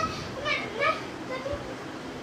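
Children's voices at play: two short, high, wavering vocal cries in the first second, then the sound falls away to low background noise.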